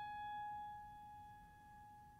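A single high note on a Steinway grand piano, struck just before and left to ring, fading slowly away.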